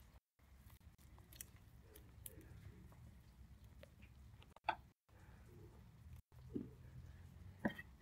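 Faint crackle of papery garlic skins being peeled off the cloves by hand, with one sharp tap on the wooden chopping board about halfway through and a couple of small knocks near the end; otherwise close to silence.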